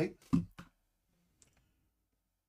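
A few sharp clicks and taps in the first half-second or so, then one faint click about a second and a half in, against a quiet room.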